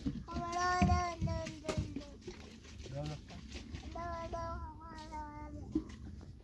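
A small child's voice holding two long, steady sung notes, the first just after the start and the second about four seconds in, with a few light knocks and a low rumble underneath.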